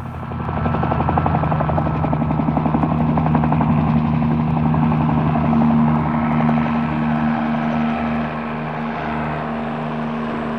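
Helicopter running in flight, heard from aboard: a steady engine and rotor hum with a rapid, even chop from the rotor blades. It grows louder in the first second, then holds steady.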